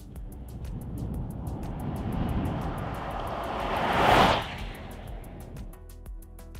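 Outro music with a steady beat, over which a car drives past: a rushing tyre-and-air sound that swells to its loudest about four seconds in, then fades away.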